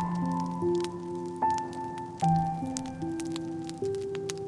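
Slow, soft solo piano playing sustained notes, with the small pops and crackles of a wood fire scattered throughout.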